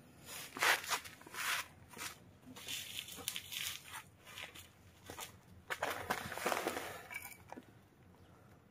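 Irregular rustling and scuffling in a wire puppy cage: a string of short scratchy noises, fairly quiet, busiest about six seconds in.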